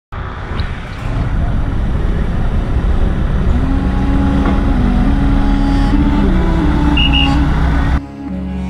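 Street traffic noise, with a small truck's engine running close by as a dense low rumble. From about three and a half seconds a slow melody of held notes plays over it, and two short high beeps sound near the end.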